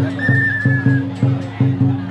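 Drum beaten in a steady rhythm with a low ring, about three beats a second, and a whistle blown once near the start, trilling and then held for about a second.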